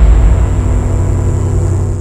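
Cinematic intro sound effect: a loud, deep bass rumble with steady held tones and a thin high tone over it, fading toward the end.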